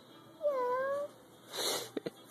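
A toddler imitating a cat: one drawn-out "meow" that dips and then levels off in pitch, followed near the end by a short breathy hiss.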